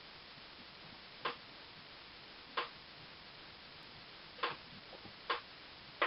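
Four short, soft clicks at uneven intervals over a steady low hiss.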